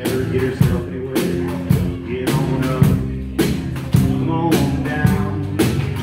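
Live acoustic band, with acoustic guitar, upright double bass and drum kit, playing a bluesy rock tune with a steady beat of about two drum hits a second.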